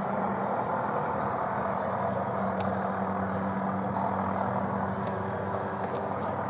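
Steady mechanical hum with a constant low drone, broken by two faint clicks, one about two and a half seconds in and one about five seconds in.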